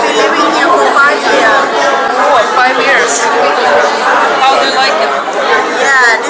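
Speech: close-up talking over the chatter of a crowd in a large hall.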